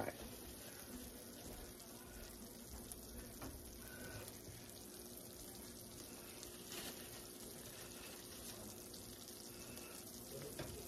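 Quiet, low steady hiss with faint rustling of a paper towel as a pickle spear is patted dry.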